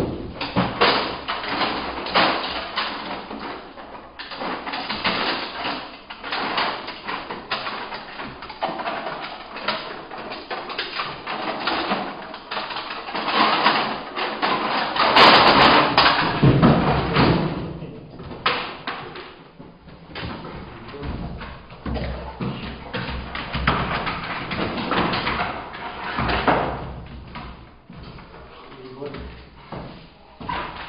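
A person's voice talking or calling on and off, over repeated thumps and scuffling as a young dog lunges at and tugs on a bite rag.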